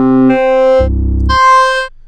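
Synthesizer sample previews from Output Arcade's source browser: four sustained synth notes in turn, each held about half a second, jumping between low and high pitches. The last, high note cuts off just before the end.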